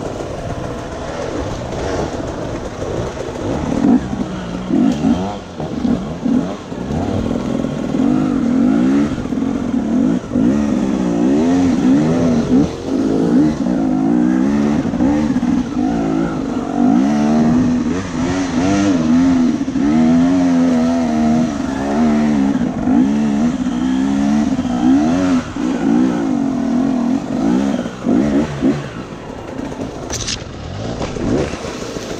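Off-road dirt bike engine ridden over a steep, rough woodland trail, its revs rising and falling constantly as the throttle is worked. It runs a little quieter at first and grows louder from about four seconds in.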